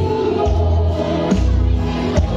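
Live amplified music through a PA system: a woman singing into a microphone over a backing track or band with deep bass notes that change about every second.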